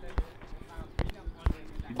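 A few short, dull thumps, irregularly spaced, like taps or knocks close to the microphone.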